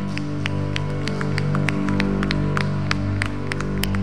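Soft background music from a worship band: a steady sustained chord held under the prayer, with faint irregular clicks over it.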